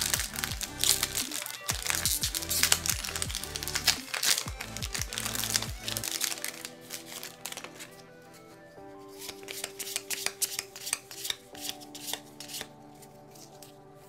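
A plastic Magic: The Gathering booster pack wrapper is torn open and crinkled in the hands, with dense crackling for the first six seconds or so. After that come sparser light ticks and rustles as the cards are handled, all over steady background music.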